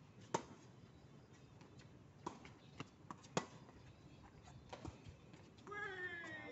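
Tennis ball being hit back and forth with rackets on a hard court: a sharp, close racket hit about a third of a second in and another a little past three seconds, with fainter ball impacts between and after. A voice begins just before the end.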